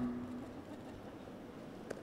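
A pause with only faint room tone of a large hall. The tail of the preceding music and voice fades out in the first half second.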